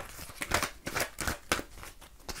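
A deck of oracle cards being shuffled by hand: a fast, irregular run of light card clicks.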